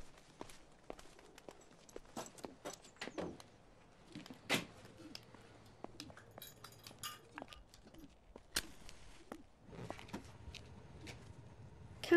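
Quiet scattered footsteps, knocks and small clinks of objects being handled on a shelf, with a sharper knock about four and a half seconds in and another nearer nine seconds.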